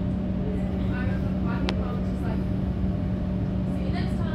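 Steady electrical hum and low rumble inside an EDI Comeng electric train carriage, with one short click about a second and a half in.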